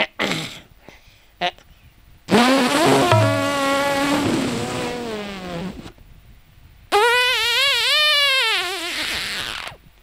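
Two long, drawn-out comic fart noises for a puppet relieving himself. The second one wobbles up and down in pitch.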